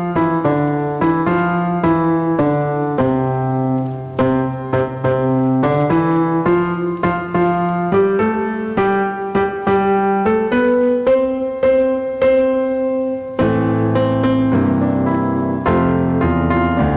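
A church keyboard instrument playing the introduction to a sung psalm: a steady, unhurried melody over chords, with a fuller chord coming in near the end.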